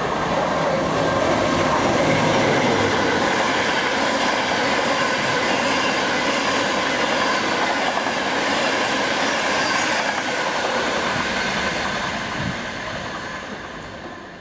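InterCity 225 express with Mk4 coaches passing through a station at speed: a loud, steady rush of wheels on rail with a faint high ringing, fading away over the last few seconds.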